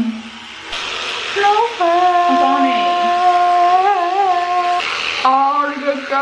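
A young woman's voice drawing out a long sung "nooo" on one held note for about three seconds, wobbling in pitch near the end before it breaks off.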